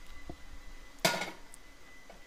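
Cast iron skillet set down on the stovetop: a single metallic clank about a second in with a short ring, after a faint click.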